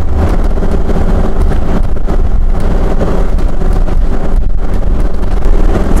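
Steady low rumble of a 2017 Jayco Precept 31UL Class A motorhome under way, heard from inside the cab: engine and road noise, with wind noise over it.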